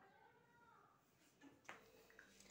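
Near silence: faint room tone, with a faint wavering high call during the first second and a sharp click near the end.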